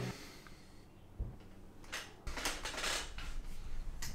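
Faint rummaging and handling noises as someone searches among items for a bottle: a light knock about a second in, then a longer stretch of shuffling, rustling and scraping that grows a little louder in the second half.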